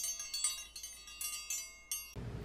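Wind chimes: a quick, continuous run of high, ringing chime strikes that overlap one another and stop abruptly just after the title card fades.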